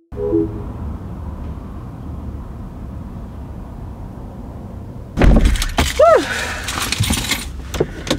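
Steady low rumble of a car idling, heard from inside the car. About five seconds in, loud rustling and knocking starts inside the car as someone settles into the seat, with one short rising-and-falling vocal sound.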